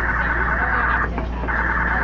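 Subway car telemetry data signal wrongly fed into the passenger audio line and played through the car's speakers as continuous data noise. It runs over a steady low hum and breaks off briefly about a second in.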